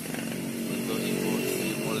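A motorcycle passing close by, its small engine running steadily.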